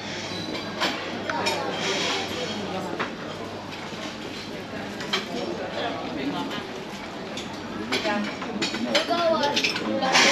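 Busy buffet restaurant hubbub: background chatter of other diners with occasional clinks of dishes and cutlery, over a steady low hum.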